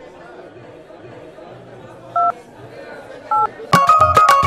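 Two short phone keypad tones, each two pitches sounding together, about two and three seconds in, over low crowd chatter. Just before the end, loud music with a heavy beat starts.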